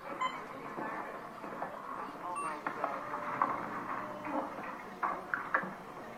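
Indistinct background voices with a couple of short electronic beeps, one right at the start and another a little over two seconds in.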